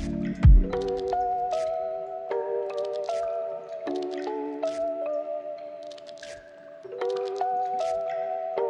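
Lo-fi hip hop instrumental. The kick and bass drop out about half a second in, leaving sustained chords that change every second or so over light, clicky percussion.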